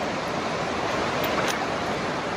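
Shallow mountain river rushing steadily over rocks, with a faint click about a second and a half in.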